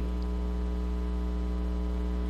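Steady electrical mains hum: a low, unchanging buzz with a ladder of even overtones and no other sound over it.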